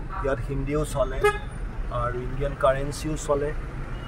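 Steady low engine and road rumble heard from inside a taxi in slow city traffic, with car horns tooting, under a person talking.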